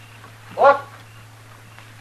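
A man's single short, frightened cry, a yelp about half a second in: the man hiding in the barrel reacts to the marshal's threat to shoot into it.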